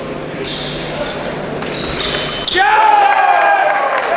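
Épée blades clicking against each other during an exchange, then about two and a half seconds in a loud, long cry that dips in pitch at its start as both fencers are scored a touch.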